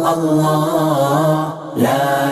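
A man's voice chanting an Islamic devotional melody, holding long, wavering notes, with a short pause for breath about a second and a half in before the chant resumes.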